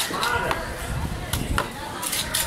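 Knife strokes cutting through a giant trevally on a wet cutting stone, with a few sharp knocks of the blade against the surface.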